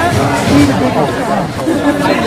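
Crowd chatter: many people talking over one another at once, loud, with no single voice standing out.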